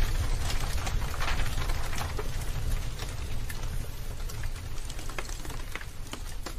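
Dense crackling and popping over a steady low rumble, slowly fading.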